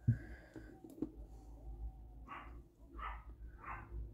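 A dog barking faintly, three short barks about 0.7 s apart in the second half. A brief knock at the very start.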